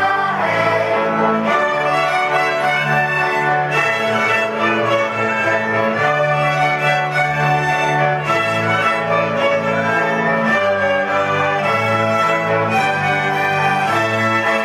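A children's folk string ensemble plays a lively instrumental folk tune: several violins over a double bass, with the bass notes changing every couple of seconds.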